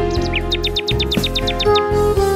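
A nightingale's song, a fast trill of about a dozen short downward-sliding high notes, about nine a second, over slow instrumental music with long held notes.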